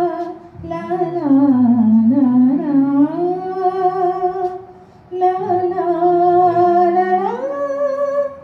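A woman singing into a handheld microphone, holding long notes that slide up and down in pitch, with a brief pause about half a second in and another just before five seconds in.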